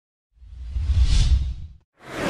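Whoosh sound effect over a deep rumble, swelling and fading away over about a second and a half, as an animated logo sting.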